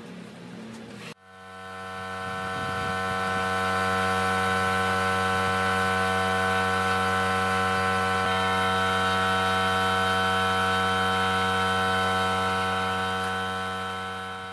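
Steady electric motor hum over a light hiss, as from an air compressor feeding a spray gun. It fades in about a second in, holds without change, and fades out near the end.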